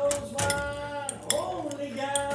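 A long, steady held note with a few sharp clinks of dishes and cutlery over it.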